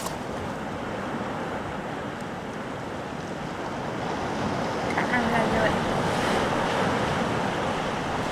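Steady noise of sea surf washing against a rocky shore, mixed with wind on the microphone, growing slightly louder about halfway through.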